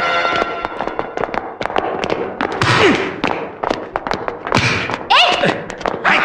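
A scuffle among a group of men: several voices shout over one another, with scattered irregular thuds and knocks. A sustained music chord fades out in the first second.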